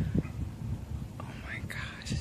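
A person whispering near the microphone, the whisper rising about halfway through, over low, irregular wind rumble on the microphone.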